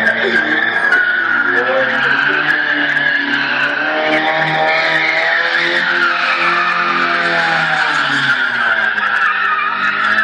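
A car drifting, its tyres squealing without a break as it slides, while the engine revs hard, its pitch dropping and climbing again several times.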